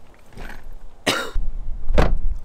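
A man coughs once, sharply, about a second in, after a faint throat sound just before. A low rumble follows the cough.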